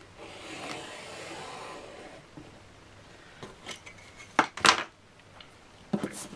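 Pencil scratching a long line along a steel ruler on thin plastic card for about two seconds. A few sharp knocks follow about four and a half seconds in.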